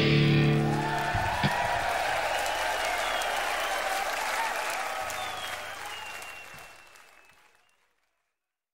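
A heavy metal band's last chord, with distorted guitar, cuts off about a second in. It gives way to live audience applause and cheering that fades out to silence near the end.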